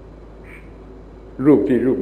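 A pause with only a steady low hum and faint hiss, then a man's voice resumes speaking Thai about one and a half seconds in.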